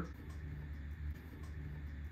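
A low steady hum of room noise with a few faint clicks of hands working at the clear plastic battery cover of an Electro-Voice Everse 8 speaker.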